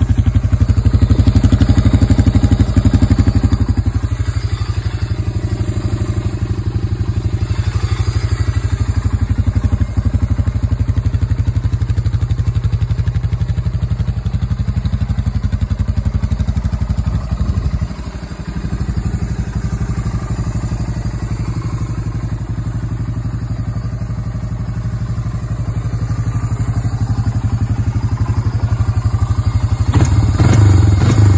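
A 1996 Honda FourTrax 300 ATV's air-cooled single-cylinder four-stroke engine idling steadily.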